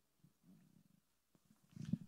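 Near-quiet room tone with faint low murmuring and a single small click. A man's voice starts just at the end.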